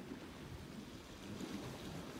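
Low, steady outdoor noise of wind and sea surf, with no distinct events.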